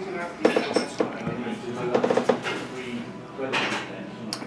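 Indistinct voices with clinks of tableware.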